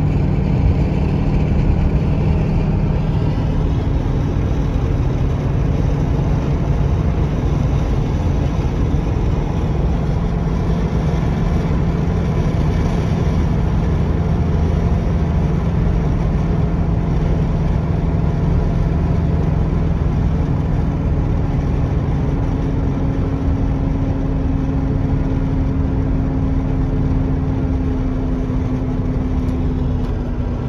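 Interior sound of a 1978 Mercedes-Benz 450 SL cruising at road speed: a steady drone from its 4.5-litre V8, with continuous tyre and wind noise.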